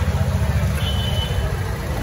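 Busy market street background noise: a steady low rumble with faint crowd chatter, and a brief thin high tone about a second in.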